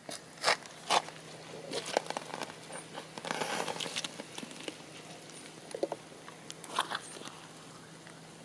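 Irregular crunching and rustling with scattered sharp clicks, over a faint steady hum.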